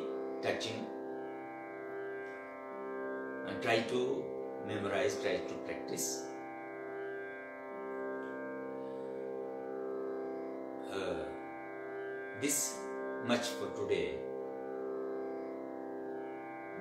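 Steady, gently pulsing drone of an electronic tanpura holding the tonic, the accompaniment to a Hindustani raag lesson. Short bursts of voice or breath cut in several times over it.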